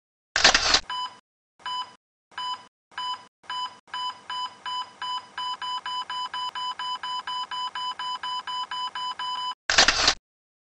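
Electronic beeps from an animated logo intro, all at one pitch. They start about one every two-thirds of a second and quicken to nearly four a second. A short loud burst of noise opens the sequence and another closes it.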